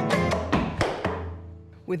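Nylon-string classical guitar chord ringing and fading away, crossed by several sharp percussive knocks in the first second.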